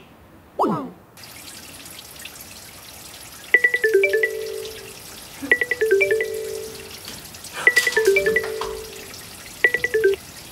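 Mobile phone ringtone sounding for an incoming call: a short melodic figure of descending notes, played four times about two seconds apart, over a steady hiss of running tap water.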